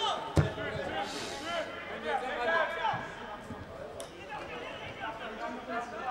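Footballers shouting and calling to each other across the pitch, with a sharp thud of a ball being kicked about half a second in.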